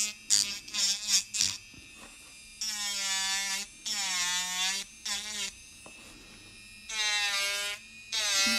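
Electric nail drill (e-file) filing a gel nail, its whine starting and stopping in short bursts of up to about a second. Within each burst the pitch sags and recovers.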